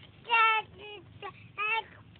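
A baby cooing: three short, high-pitched sounds, the first and loudest about a third of a second in, a soft falling one after it, and another near the end.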